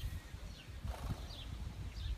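Small birds chirping faintly in short falling notes over a low, irregular rumble, with a brief rustle about a second in.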